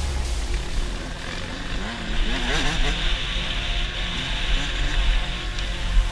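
Dirt bike engine revving up and down, the pitch rising and falling from about two seconds in, under background music with a steady bass.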